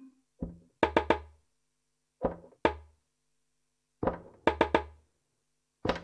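Electronic percussion from a randomly generated TidalCycles pattern played through SuperCollider: short knocking sample hits with a low thud, some coming in quick threes, in a sparse repeating pattern with silent gaps between.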